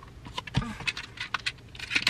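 Small plastic clicks and rattles of a cassette adapter being taken out of its packaging and handled, a run of sharp ticks spread through the moment.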